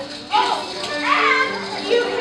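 High children's voices calling out in short gliding bursts over background music with long held notes.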